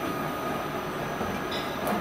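A 20-litre plastic bottle blow-moulding machine running with a steady mechanical noise and a thin, steady whine, and a brief hiss near the end.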